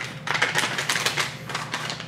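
Dry beefy onion soup mix being shaken out of a paper packet onto a bowl of raw ground meat: a quick, dense run of small taps and rustles from the packet and the falling flakes.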